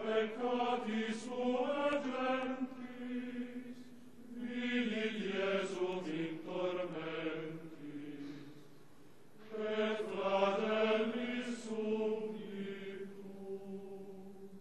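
A male choir chanting a slow hymn in three long sung phrases, with short breaths between them.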